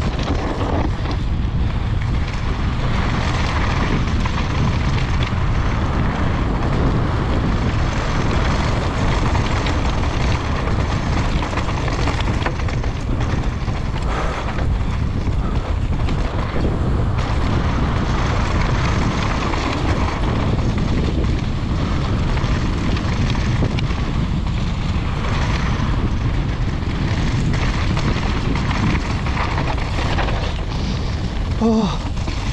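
Steady rush of wind on an action camera's microphone, mixed with a mountain bike's tyres rolling over loose dry dirt and small rocks during a fast downhill run.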